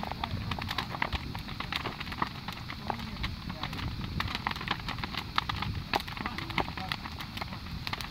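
Large bonfire crackling, with many irregular sharp pops and snaps over a low rumble.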